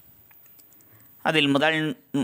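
A man's voice narrating in Tamil, which starts a little past halfway after about a second of quiet broken only by a few faint clicks.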